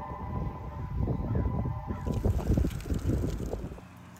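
Wind buffeting the microphone: an uneven low rumble that grows louder about a second in and cuts off suddenly near the end.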